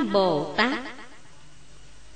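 A voice in Vietnamese ending a recited Buddhist invocation to Quán Thế Âm, its pitch gliding down, which stops under a second in and gives way to a pause with only faint background hiss.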